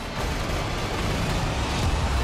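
Movie-trailer sound mix of music and dense action sound effects, with a heavy low rumble under a loud wash of noise.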